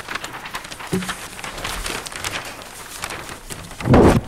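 Large paper sheets rustling and crackling as they are handled, with a much louder rustle near the end as the sheets are lifted up.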